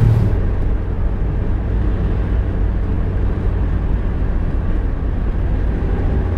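Steady low rumble of a taxi on the move, heard from inside the cabin: engine and road noise.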